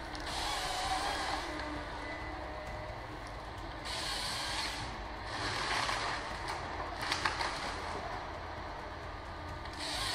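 Wheeled forestry harvester working a felled pine: steady engine and hydraulic noise that swells in waves of hiss as the harvester head feeds the log. There are a few sharp knocks about seven seconds in, and a rising hiss near the end as the head's chainsaw bar cuts into the trunk.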